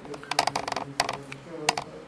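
Computer keyboard typing: a quick run of key clicks about half a second in, then single taps at about one second and near the end.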